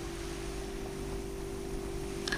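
Steady background hiss with a faint, even low hum underneath: the room tone of a quiet indoor recording.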